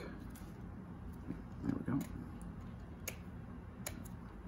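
Fingers picking at the cellophane wrap of a playing-card tuck box, giving a few faint crinkles and sharp ticks.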